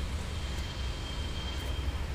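Steady low background hum and rumble with a faint, constant high-pitched whine.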